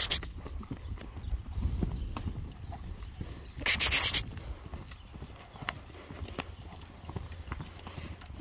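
A loose horse's hoofbeats on a sand arena, dull and low, picking up to a canter. Two short, loud hisses, one at the start and one about four seconds in, stand out over the hoofbeats.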